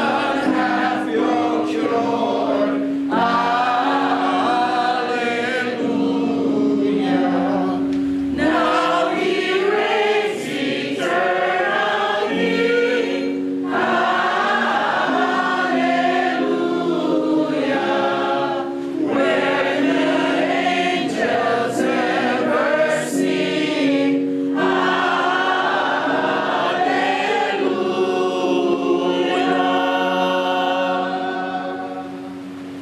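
A roomful of people singing a hymn together, in phrases broken by short pauses about every five seconds.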